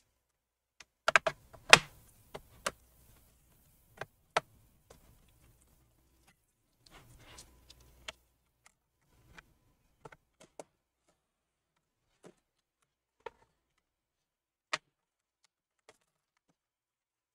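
A laptop's snap-in bottom cover being pried off with a plastic pry tool, its clips releasing in sharp clicks and snaps. There is a loud cluster about a second in, then single clicks scattered through the rest, with some rubbing and handling noise.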